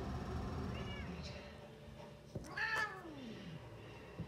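A house cat meowing: a short call about a second in, then a louder, longer meow near the middle whose pitch slides down, with a sharp tap just before it.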